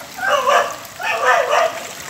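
A dog barking twice, two drawn-out barks about a second apart.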